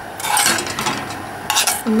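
A metal spoon stirring thin, still-runny kiwi jam in a stainless steel saucepan, scraping the bottom and sides of the pot. From about a second and a half in come sharper clinks of the spoon against the pan.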